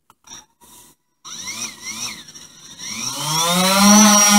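DJI Phantom 4 quadcopter's motors and propellers starting about a second in, after a few faint clicks, and spinning up for a hand launch. It is a buzzing whine that rises in pitch and grows louder, then holds steady near the end as the drone lifts off.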